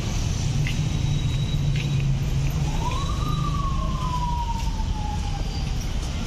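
Street traffic with a steady low engine hum. About two and a half seconds in, a single siren wail rises quickly, then slowly falls away over the next few seconds.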